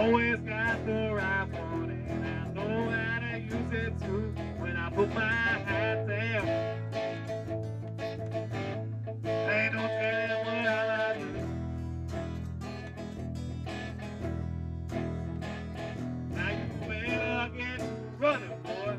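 A band playing live: guitars over a steady bass line.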